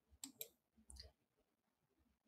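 Near silence with a few faint short clicks, two close together early on and one about a second in.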